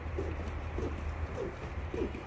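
Footsteps on a wooden plank boardwalk at walking pace, a little under two steps a second, over a steady low rumble.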